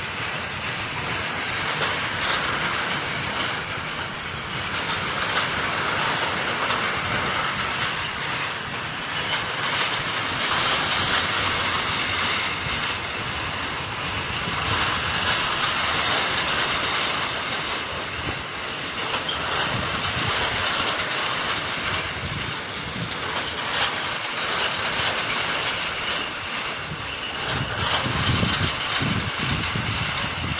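Freight train of stake wagons loaded with steel pipes rolling past: a steady rumble and hiss of steel wheels on rail, with repeated clicks of wheels crossing rail joints.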